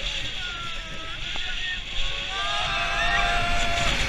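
Blue Fire Megacoaster train running along its track at speed, with rumble and wind rushing over the camera, and riders giving long held yells over it.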